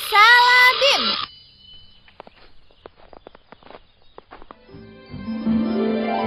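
Cartoon magic-spell sound effect: a shimmering pitched tone with a high sparkle, sliding upward and ending in a falling swoop about a second in. Faint scattered clicks follow, and background music begins about five seconds in.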